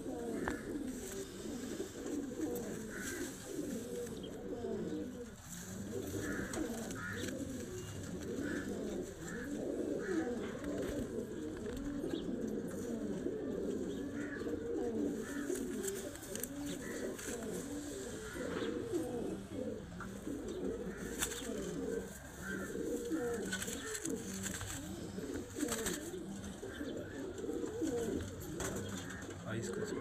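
A loft of domestic pigeons cooing all at once, many low overlapping coos forming a continuous warbling chorus.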